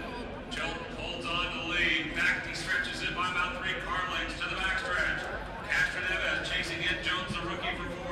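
Continuous indistinct talking of people close by in the grandstand crowd.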